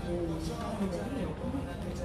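Quiet, indistinct speech: a voice talking in the background, with no words clear enough to be transcribed.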